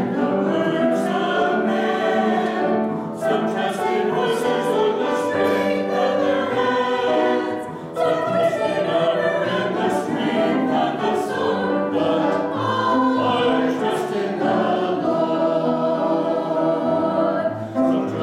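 Mixed-voice church choir singing an anthem with piano accompaniment, pausing briefly between phrases about three and eight seconds in.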